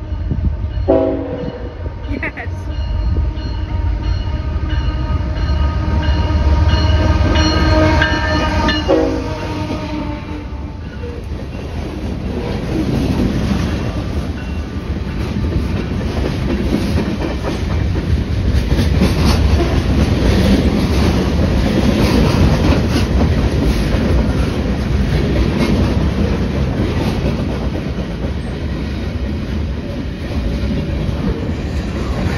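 BNSF freight train passing: the locomotive's horn sounds one chord held for about eight seconds, ending in a short extra blast. Then the rumble of the train and the clickety-clack of boxcar wheels on the rail joints carry on as the cars roll by.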